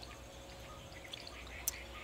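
Quiet biting and chewing of a soft steamed semolina pitha with coconut filling, mostly faint with a few light clicks toward the end.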